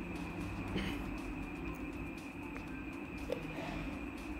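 Quiet room tone: a steady low hum with a faint thin high whine, and no distinct event beyond one tiny blip about three seconds in.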